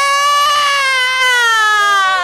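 A woman's voice holding one long, high, wailing note that slowly falls in pitch: a drawn-out stage cry of grief.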